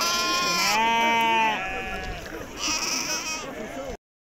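A sheep bleating in one long, steady call lasting about a second and a half, with people's voices around it.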